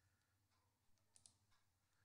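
Near silence, with two very faint clicks a little past a second in.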